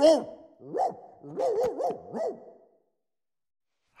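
Cartoon dachshund barking and yowling: a warbling howl trails off just at the start, followed by several short rising-and-falling barks. It falls silent about two-thirds of the way through.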